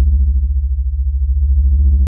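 Deep, steady synthesizer bass drone with a few faint overtones above it, cutting off suddenly at the very end.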